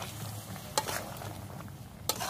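Potato curry sizzling in a metal kadai while a spatula stirs it, with one sharp scrape-click of the spatula against the pan about a second in.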